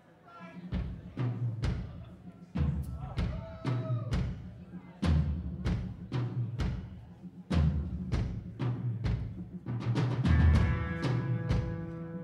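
Live rock band opening a song: drums keeping a beat with heavy low drum hits and bass, and sustained guitar chords coming in about ten seconds in.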